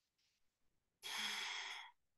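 A person sighing: one breathy exhale of a little under a second, about a second in, close to the microphone.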